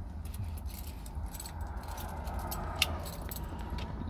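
Light scattered clicks and small rattles, like small objects being handled, over a steady low rumble inside a van cab, with one sharper click near the end.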